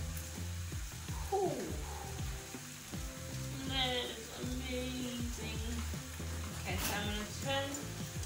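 Steady sizzle of steak strips and peppers frying in a pan, while a wooden spoon stirs cheese sauce in a stainless steel pot. Background music with a voice runs underneath.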